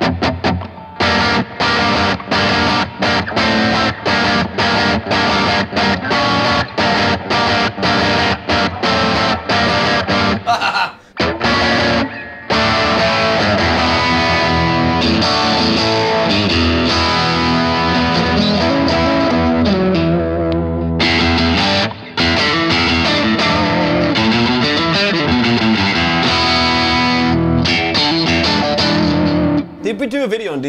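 Ibanez S-series electric guitar played with heavy distortion through a Blackstar valve combo amp. It opens with fast, choppy palm-muted riffing for about ten seconds, then moves to sustained chords and lead notes with string bends and vibrato.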